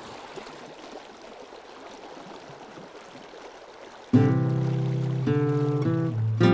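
Flowing river water, a steady rushing hiss fading in. About four seconds in, acoustic guitar music starts with a held chord, much louder than the water, and changes chord a second later.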